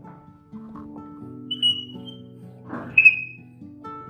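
Chalk on a blackboard drawing a star, giving two short high squeals with a scratch under the second, over soft background music with held notes.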